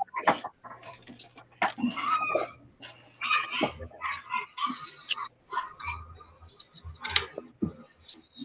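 A pet bird calling in the room: a run of short, irregular chirps and squawks.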